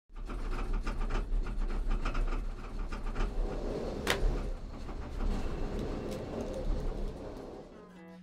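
Gondola lift cabin running: a steady low rumble with continual rattling and small clicks, one sharp clack about four seconds in, fading down near the end.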